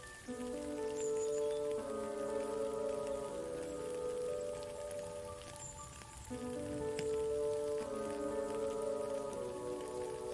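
Steady rain with soft ambient music on top: sustained chords that shift every second and a half or so, the phrase starting over about six seconds in.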